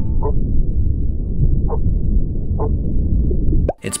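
Red-bellied piranha sounds: a continuous low, rapid drumming made with the swim bladder, with three short, sharper pops spread through it. It stops just before the end.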